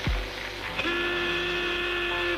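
Cartoon soundtrack sound effects: a quick downward-swooping thud at the start, then a steady whistle-like tone held for about a second and a half.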